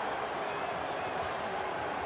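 Steady crowd noise of a basketball arena audience, heard through an old TV broadcast.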